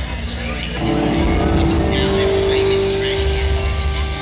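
A long, steady amplified electric guitar tone from the stage, starting about a second in and held for about three seconds, over crowd chatter in a club.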